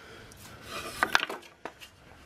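A wooden board being handled: a short rubbing slide, then a few sharp knocks about a second in.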